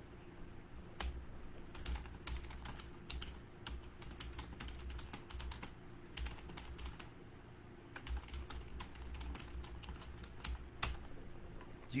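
Typing on a computer keyboard: irregular runs of quick key clicks, fairly faint.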